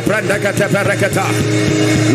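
Voices praying aloud, unbroken, over background music with long held chords.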